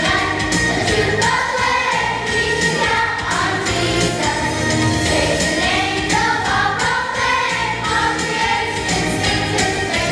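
Children's choir singing a song over instrumental accompaniment with a steady beat.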